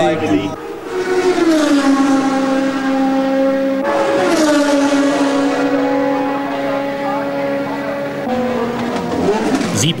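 1975 Formula 1 cars running at full speed on a soaked track, engines at high revs. Each car's note drops as it passes, about a second in and again about four seconds in, with hiss from the spray.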